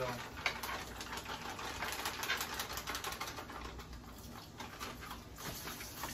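Kitchen knife knocking on a plastic cutting board while slicing sausage, a run of light, irregular taps.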